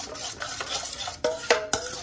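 A steel spoon beating eggs in a stainless steel bowl: quick, rhythmic clinks of the spoon against the bowl, about four a second, with the bowl ringing briefly after several strikes in the second half.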